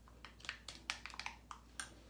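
Metal spoon clicking lightly against a small glass bowl as a creamy conditioner mixture is stirred, about eight irregular clicks.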